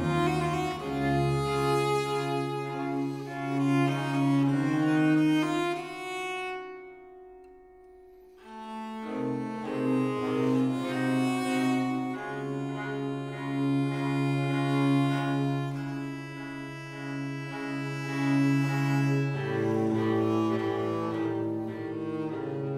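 Period-instrument string trio of baryton, viola and cello playing a classical piece. The playing thins to a single fading held note about six seconds in, pauses briefly, and starts again about nine seconds in.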